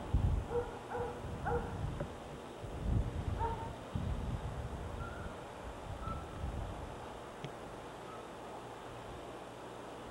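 A dog barking a few short times, faintly, with most barks in the first four seconds and fainter calls later. Low rumbles sound on the microphone underneath.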